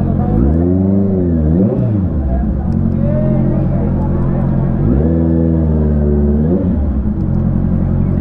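Honda CBR650R inline-four engine running at a crawl with throttle blips that rise and fall in pitch: a long rev and a short one in the first two seconds, then another long rev about five seconds in. The revs are a warning to make pedestrians clear the road.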